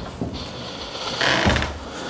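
Interior panelled door being opened: the handle and latch click and the door swings open, with a low thud or two from footsteps about one and a half seconds in.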